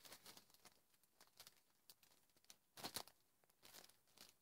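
Near silence with a few faint, scattered rustles of loose alpaca fiber being handled, the most noticeable a little before three seconds in.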